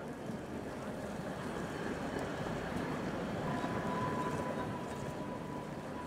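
Steady city street ambience: a dense rumble of traffic and crowd noise, with a single held high tone coming in a little past halfway.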